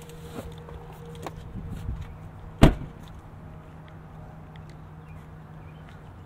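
Pickup truck's driver's door pushed shut with a single solid slam about two and a half seconds in, after a few lighter clicks as it is opened and let go. A steady low hum runs underneath.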